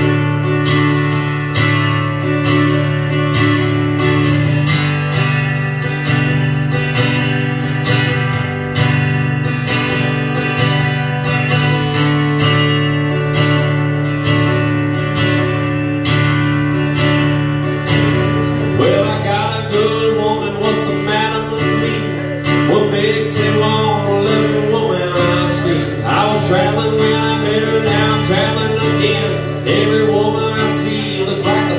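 Acoustic guitar strummed in a steady rhythm through an instrumental stretch of a song. About two-thirds of the way in, a voice comes in singing over it.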